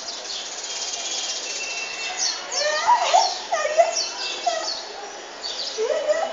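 Small birds chirping repeatedly in short falling notes. A few short gliding vocal sounds lower in pitch come about halfway through.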